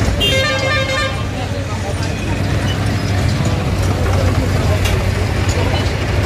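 Komatsu excavator's diesel engine running with a steady low drone while it demolishes buildings. A vehicle horn sounds once for about a second near the start, over the chatter of a crowd.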